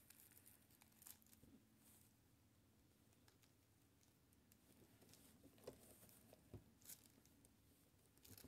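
Near silence with faint, scattered rustles and crinkles of plastic deco mesh being bunched by hand, a few more of them near the end.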